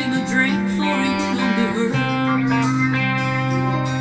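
Fender Telecaster electric guitar in open G tuning, played with hybrid picking: plucked notes over sustained backing chords that change about two seconds in.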